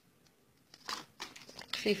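Crinkling and rustling of a handled paper invoice and packaging, in a cluster of quick crackles about a second in. A voice starts near the end.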